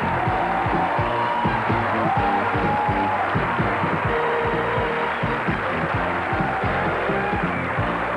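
Closing theme music of a TV variety show: a band playing a melody in held notes over a steady beat.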